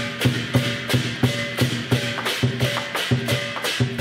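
Chinese lion dance percussion: a large barrel drum beaten with cymbals clashing along, in a quick steady beat of about three to four strokes a second.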